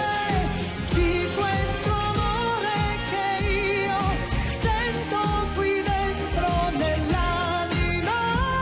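A woman singing a pop song into a microphone over a band backing with a steady beat, her voice gliding and wavering through the melody.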